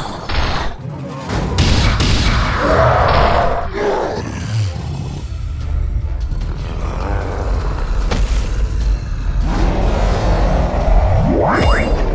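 Background music under cartoon fight sound effects: heavy thuds and booms, and a rising whooshing sweep near the end that builds into a blast.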